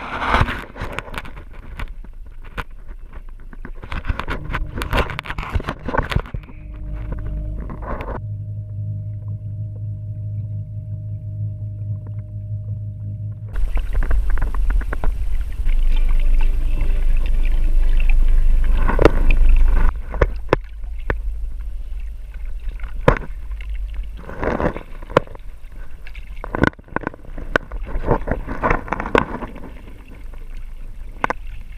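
Water splashing and sloshing around a small raft and a swimmer being pushed through a lake by a Haswing W-20 electric trolling motor. From about 6 to 13 seconds a steady low motor hum comes through, followed by a loud rush of water and wind noise until about 20 seconds in, and then more irregular splashing.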